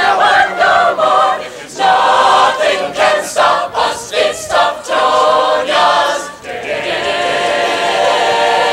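A choir singing a Tufts college football song, phrase after phrase, ending on a held chord near the end.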